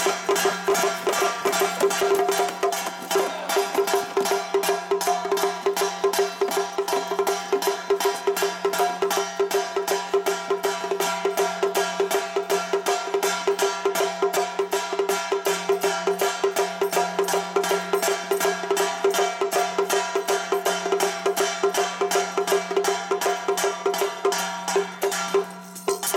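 Lion-troupe gong-and-drum percussion (drum, gong and cymbals) struck in a fast, even rhythm of several beats a second over a steady ringing tone, with a short break near the end.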